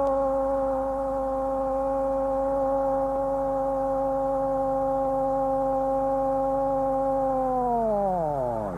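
A football commentator's long drawn-out goal cry: one 'gooool' held at a steady pitch for about eight seconds, its pitch falling away at the end.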